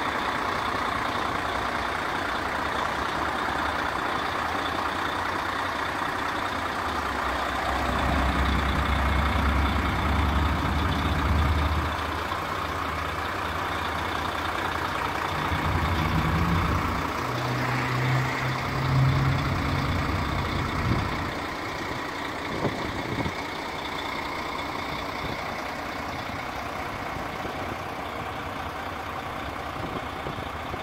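Heavy diesel truck engine idling over steady outdoor noise. Its low rumble swells for a few seconds about a quarter of the way in, and a steady low hum comes through around the middle before fading back.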